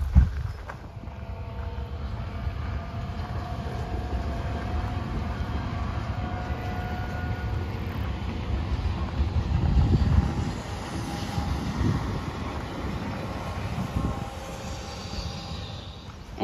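Passenger train passing on the rail line, a steady rumble with a faint whine, loudest about ten seconds in.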